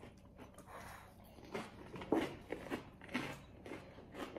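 Chewing of a crunchy caramel popcorn and chocolate and vanilla cereal snack mix: soft, faint crunches about every half second in the second half.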